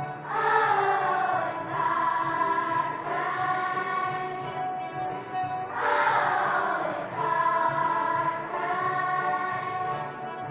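Children's choir singing together, with two phrases that slide downward in pitch, about half a second in and again near six seconds.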